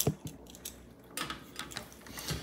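A few light clicks and taps of small tools being picked up and handled on a workbench, as a soldering iron and solder are readied.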